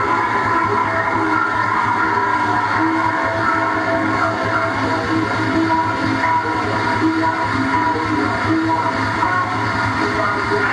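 Live electronic noise music from synthesizers: a dense, steady drone of many held tones layered over a low hum, shifting only slightly as knobs are turned.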